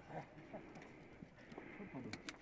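Faint, irregular footsteps and trekking-pole tips clicking and knocking on loose rocks.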